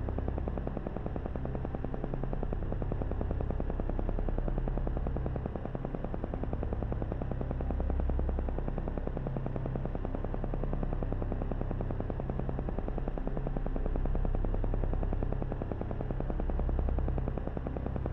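Synthesized meditation background tone with a deep low drone and a rapid, even pulse, swelling gently in loudness every few seconds.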